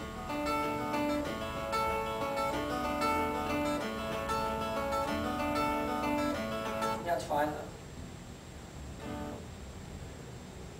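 Guitar playing a phrase of ringing picked notes over a recurring lower note for about seven and a half seconds, then stopping.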